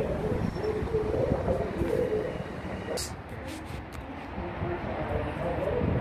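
Long Island Rail Road M7 electric train moving away down the track, a low steady rumble, with a sharp click about halfway through.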